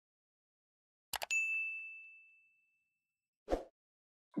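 Sound effects of a like-and-subscribe animation: a quick double mouse click about a second in, followed at once by a single bright notification-bell ding that rings out over about a second. A short soft burst of noise follows near the end.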